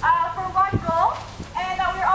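A high-pitched voice talking, with two dull low knocks, one a little before the middle and one about three-quarters of the way through.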